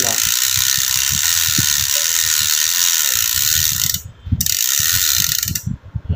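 Bicycle rear freehub pawls clicking so fast they make a continuous buzz as the rear wheel and cassette spin freely. It comes in two spells: about four seconds, a brief break, then about a second and a half more.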